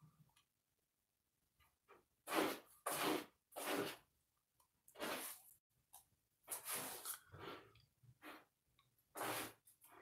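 A person's breathy noises close to the microphone: about nine short bursts of breath spread over the second half, with silence between them.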